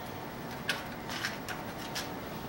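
Hands working tape on a plywood generator coil disc: a few short scratchy rubs and clicks, spread across the two seconds.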